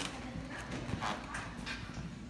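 Feet landing on a trampoline mat, a run of short impacts about twice a second, with indoor play-area hubbub behind.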